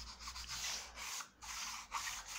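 A stick of white chalk rubbed on its flat side across black paper in several quick back-and-forth strokes, a dry scratchy rubbing. The chalk is pressed down harder for the nearer, lower part of the picture.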